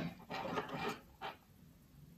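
Faint handling sounds of scissors being brought to the thread by a crocheted garment: a soft rustle lasting under a second, then a brief light tick.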